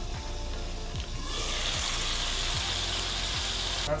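Trout fillets sizzling as they fry in hot olive oil in a lidded pan. The sizzle comes in about a second in and stops abruptly near the end, over a background music beat.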